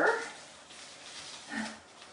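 Paper garland rustling faintly as it is lifted and untangled by hand, with one short faint vocal sound about one and a half seconds in.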